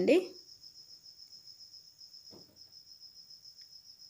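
A faint, steady, high-pitched insect-like trill of fast even pulses runs through the background, after a woman's voice trails off at the start. A brief faint sound comes a little past halfway.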